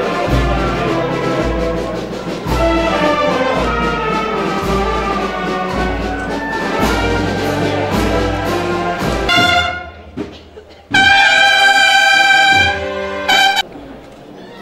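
Procession brass band playing a Holy Week processional march over a steady bass drum beat. The drum stops about nine seconds in, and the march closes on loud held brass chords, the last one short.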